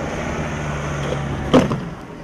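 A hard thud about one and a half seconds in as a loaded plastic rescue litter is set down on a gravel track, over a steady low hum that stops near the end.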